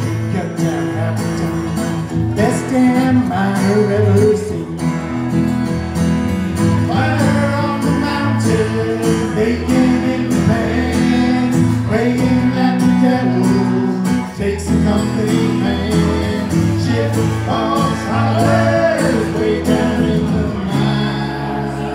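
Live country-folk band playing: strummed acoustic guitar over electric bass, with a melody line on top.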